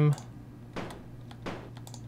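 A few short, sharp clicks of a computer mouse, spaced irregularly, over a low steady hum.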